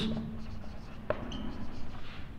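Marker pen writing on a whiteboard: faint strokes, with a small tap about a second in and a brief high squeak just after.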